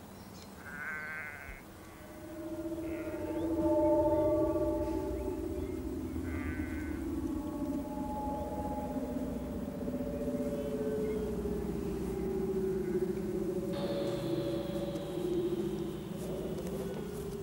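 Sheep bleating, three short calls in the first seven seconds, over soft music of long held notes that starts about two seconds in.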